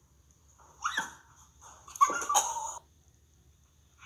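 A dog on a couch giving two annoyed cries: a short one falling in pitch about a second in, then a louder, longer one about two seconds in.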